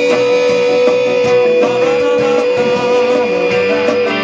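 Live rock band playing: electric guitars and drums with regular beats, with one long note held steady over the band through most of the stretch.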